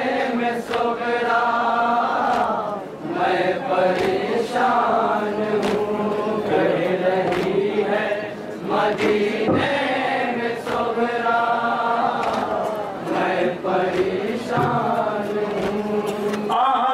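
A group of men chanting a Shia nauha (mourning lament) in unison, loud and continuous, with sharp slaps recurring about once a second: the chest-beating (matam) that keeps time with the lament.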